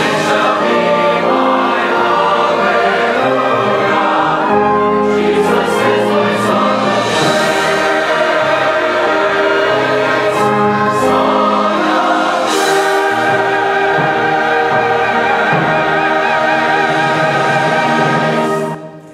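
Large church choir singing a hymn in sustained chords, accompanied by an orchestra.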